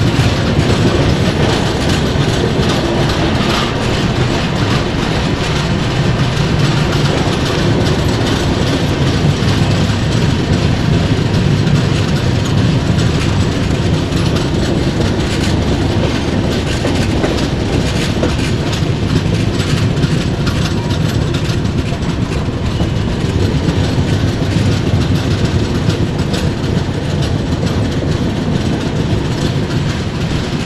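A passenger express train running on its track, heard from aboard a moving coach: a steady, loud rumble of wheels on rails with the clickety-clack of rail joints.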